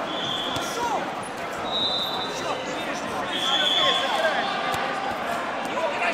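Echoing hubbub of a busy wrestling tournament hall: many voices talking and calling out at once, with a few sharp knocks. Three long, steady high tones sound over it, about a second each.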